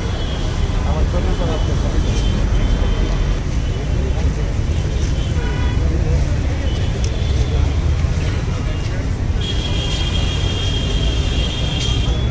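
Steady rumble of road traffic with indistinct chatter from a crowd of people.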